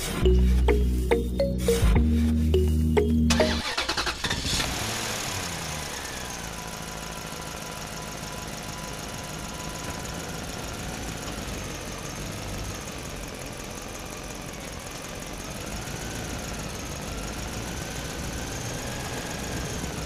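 Background music for about the first three and a half seconds, then an engine sound that starts abruptly, falls in pitch, and settles into a steady run.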